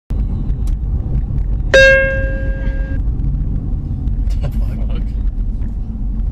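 Steady low road and engine rumble of a car being driven, heard from inside the cabin. About two seconds in, a single loud ringing tone sounds for about a second and then cuts off.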